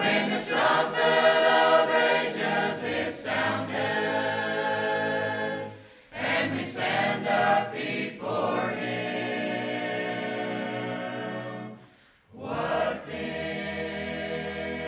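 Mixed choir of men and women singing a cappella in parts. The singing runs in phrases with a brief break for breath about six seconds in and another near the end, with a long held chord just before the second break.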